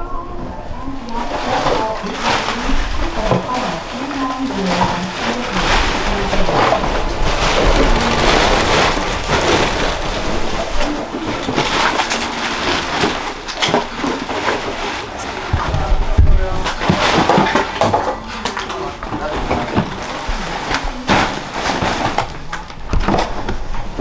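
Black plastic trash bags rustling and crinkling as household debris is stuffed into them and dragged, continuing without a break, over background music.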